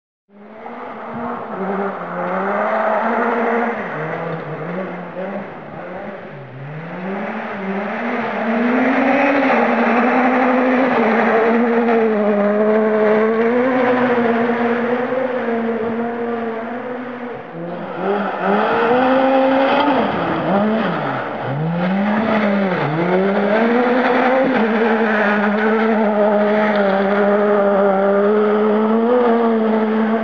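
Ford Fiesta R2 rally car's 1.6-litre four-cylinder engine revving hard on gravel, its pitch climbing and dropping again and again through gear changes and lifts. It fades in from silence in the first second. After a cut at about 18 seconds in, a second run has deeper, quicker dips and climbs in pitch as the driver comes off the throttle and back on for corners.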